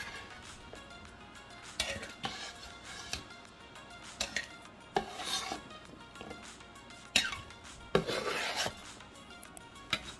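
Kitchen knife scraping halved Scotch bonnet peppers across a wooden cutting board and tipping them into a glass jar of vinegar: scattered short scrapes and knocks, several seconds apart, with light clinks against the jar.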